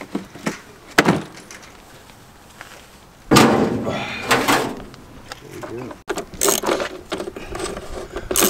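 Metal hand tools clattering as they are picked out of a plastic socket-set case and a metal tool chest. There is a sharp knock about a second in, a longer loud rattle about three seconds in, and a run of small clicks and knocks near the end.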